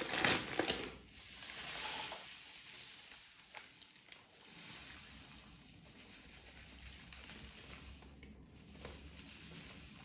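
A brown paper bag crinkling as it is handled and opened, then sand pouring from the bag into a small glass: a soft, steady hiss that swells about a second in and carries on more faintly.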